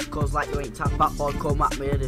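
A young man rapping fast over a hip hop beat with recurring deep, downward-sliding bass kicks.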